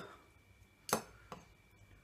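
Two light knocks of a utensil against a mug while chocolate spread is added to mug-cake batter, about half a second apart, the first louder.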